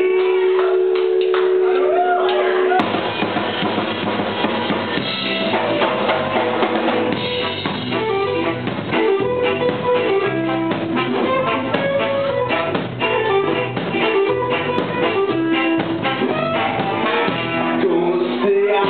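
Live ska band playing: a held two-note chord opens, then drums, bass and the full band come in about three seconds in, with trombone, keyboard and electric guitar over a steady drum-kit beat.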